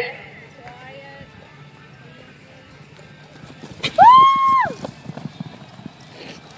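Hoofbeats of a barrel-racing horse running on soft arena dirt, irregular and fairly faint. About four seconds in, one loud high-pitched call is held for about half a second, rising at the start and falling at the end.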